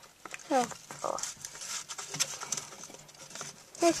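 A brief falling vocal sound from a child, about half a second in, then soft rustling and light tapping of handling.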